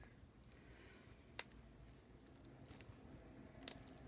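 Near silence: room tone with a few faint, short clicks, the clearest about a second and a half in and again near the end, from a CD album being handled and set aside.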